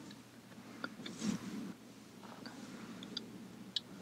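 Faint small clicks and taps from a small paintbrush dabbing on a painted panel, with a soft rustling swell a little after a second in.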